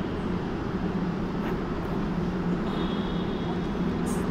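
Steady low background rumble of indoor building ambience, with no distinct event; a faint high whine joins in a little past halfway.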